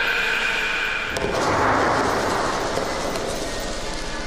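Sustained, held tones of a dramatic film score, overtaken about a second in by a loud rushing, rumbling noise swell that slowly eases off.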